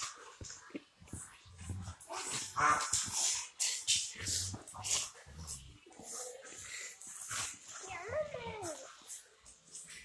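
A Rottweiler and a pit bull play-fighting on a hardwood floor: scuffling, with many quick clicks of claws and paws on the boards, and a short falling whine from one of the dogs about eight seconds in.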